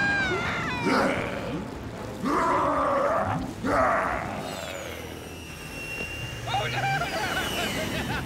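Wordless cartoon voices: a short cry about a second in, two loud groans from about two to four seconds in, and a wavering vocal sound near the end.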